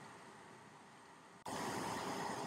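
Near silence, then an abrupt switch about a second and a half in to a steady, faint hiss of microphone room tone.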